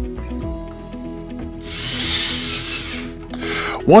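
Background music, with a cordless drill running once for about a second and a half in the middle.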